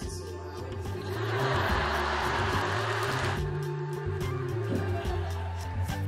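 Music with a steady bass line plays throughout. About a second in, an audience bursts into applause and cheering for roughly two seconds, then it cuts off suddenly.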